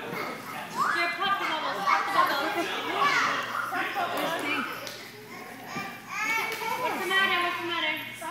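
A group of toddlers playing, their high, excited voices and shouts overlapping, with pitches sliding up and down.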